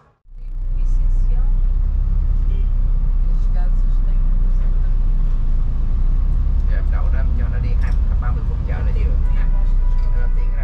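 Steady low engine and road rumble heard from inside a vehicle's cabin as it moves in traffic; it starts just after a sudden cut.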